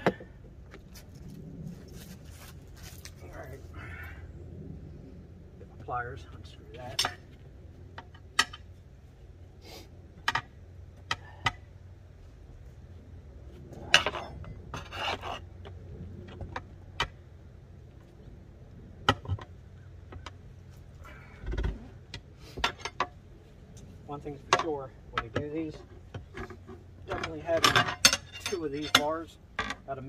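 Steel tire irons clinking and knocking against a steel tractor wheel rim in irregular sharp metallic strikes, as the tight bead of an old rear tractor tire is pried off the rim.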